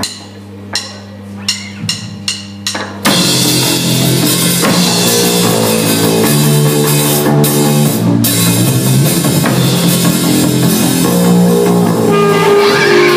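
A count-in of about six sharp drum taps over a low amplifier hum, then, about three seconds in, a live punk rock band comes in loud together: drum kit, bass guitar and electric guitars playing the opening of the first song.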